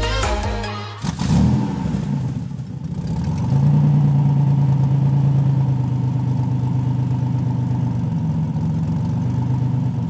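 Music stops about a second in; then a car engine revs briefly and settles into running steadily at a held speed.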